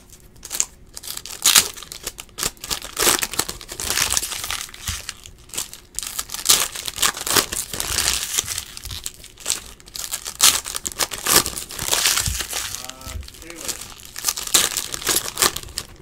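Foil wrappers of Optic basketball card packs being torn open and crinkled by hand, in an irregular run of crackles and rips that comes and goes.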